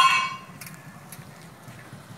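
A loud ringing metallic tone, struck again at the very start and dying away within about half a second, followed by faint steady background noise.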